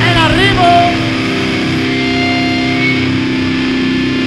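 Live heavy metal band playing: distorted electric guitars holding sustained chords, with a short wavering, bending high note in the first second.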